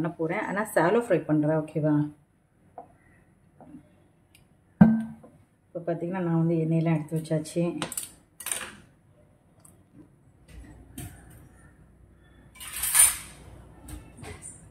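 Kitchen cookware clatter: one sharp metal knock about five seconds in, the loudest sound, then a few lighter clinks and a short hiss near the end.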